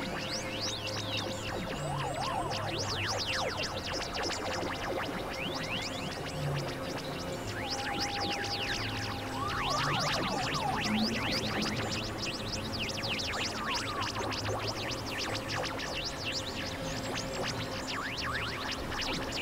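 Experimental electronic synthesizer music: a steady drone with many quick, chirp-like pitch sweeps over it, and a higher held tone for a couple of seconds about halfway through.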